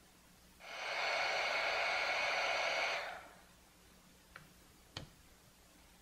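Electric heat gun blowing steadily for about two and a half seconds, shrinking heat-shrink tubing, then switching off; two small clicks follow.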